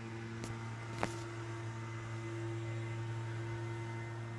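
Steady low electrical hum, with two faint clicks about half a second and a second in.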